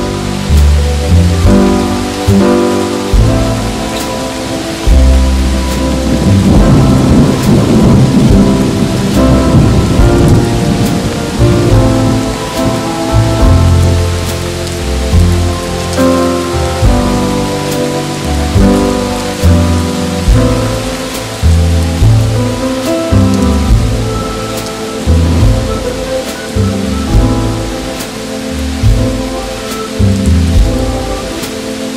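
Steady rain with a long roll of thunder swelling up about a fifth of the way in and fading out over several seconds, mixed with slow jazz music with a walking bass line.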